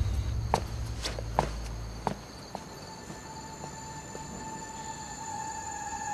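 Footsteps walking away, about five steps over the first two and a half seconds, over a low music drone that stops about two seconds in. A steady high tone of eerie soundtrack music then comes in and holds.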